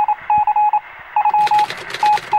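Electronic beep tone at a single steady pitch, keyed on and off in short and long pulses like telegraph Morse code: the opening of a news-segment sting. A fast run of clicks joins it about a second and a half in.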